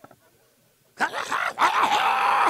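Two loud, drawn-out vocal cries starting about a second in, each rising and then falling in pitch, the second one longer.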